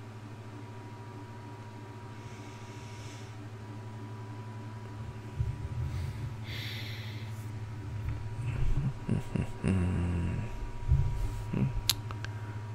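A man breathing near the microphone, with a couple of short breaths and some low, irregular mouth and throat sounds in the second half. Under it runs a steady low electrical hum with a faint high tone.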